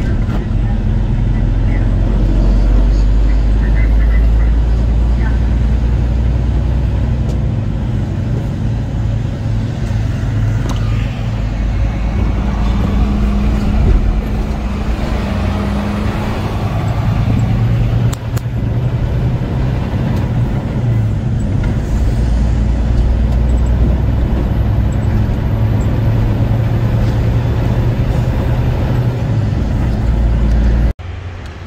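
Semi-truck engine and road noise running steadily while driving on the highway, a continuous low drone that rises and falls a little with no sharp events.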